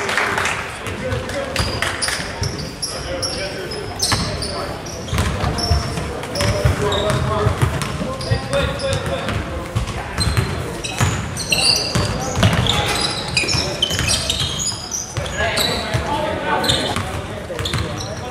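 Basketball game on a hardwood gym floor: the ball being dribbled and bounced, short high sneaker squeaks, and players and spectators calling out indistinctly, all echoing in the hall.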